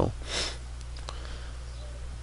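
A narrator's short breath in about a third of a second in, then a steady low electrical hum from the recording.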